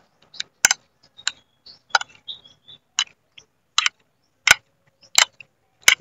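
About a dozen sharp, irregular clicks and taps of a metal spoon against a plate of fish kinilaw, spaced roughly half a second to a second apart.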